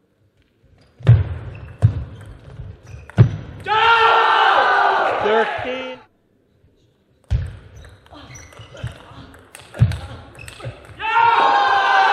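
Table tennis ball knocks and sharp impacts during a rally, followed by a loud, long celebratory shout from the player who won the point. This happens twice: a few knocks in the first seconds, then a shout lasting about two seconds; then more knocks, and a second shout near the end as the game is won.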